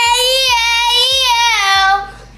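A young boy's voice holding one long sung note for about two seconds, dipping slightly in pitch before it stops near the end.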